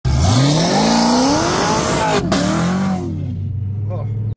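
V8 cars at full throttle: the engine note climbs steeply, breaks around two seconds in, then drops in pitch as they pass and pull away. A low steady engine drone is left near the end.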